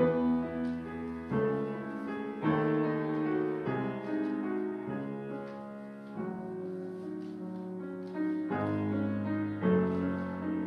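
Grand piano played solo: sustained chords with a melody line above them, changing every second or so. It grows louder with struck chords about two and a half and eight and a half seconds in.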